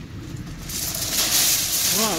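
Handling noise: nylon puffer-jacket fabric rubbing over the phone's microphone, a rustling hiss that starts about a third of the way in and grows louder.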